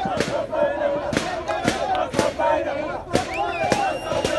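Crowd of protesters chanting slogans together, with a sharp beat about twice a second keeping time.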